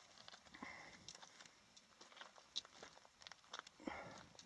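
Near silence with faint, irregular footsteps on loose rock and gravel.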